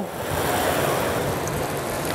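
Steady sizzling and simmering of pans on a gas range: seafood cooking in hot pans, heard as an even hiss.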